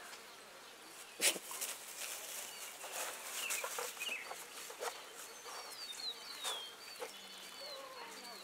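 Short bird chirps, some sliding in pitch, with scattered sharp clicks and rustles throughout and the loudest click a little over a second in.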